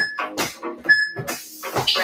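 Workout music playing, with two short high beeps about a second apart.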